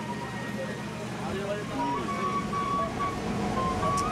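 Opening soundtrack of a documentary film: a high melody of long held notes, over indistinct voices and a low rumble that grows in the second half.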